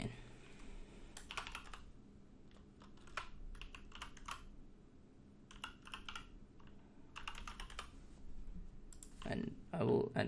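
Typing on a computer keyboard: short runs of keystrokes with brief pauses between them, as an email address is typed in.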